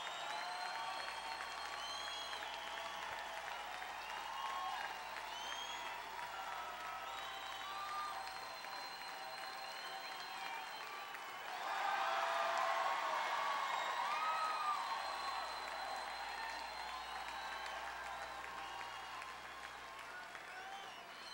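Concert audience applauding and cheering, with scattered whistles and shouts; the applause swells louder about twelve seconds in, then slowly eases.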